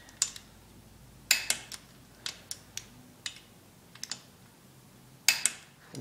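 Irregular light metallic clicks and taps from a torque wrench and socket being handled while differential cover bolts are torqued, a cluster about a second in and single clicks scattered after it.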